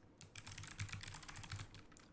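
Quick run of keystrokes on a computer keyboard, a short word typed in rapid succession.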